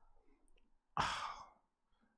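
A man's single breathy sigh, a short exhale about a second in.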